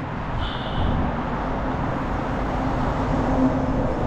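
Steady low rumble of a vehicle on the move, with a faint steady hum running through it.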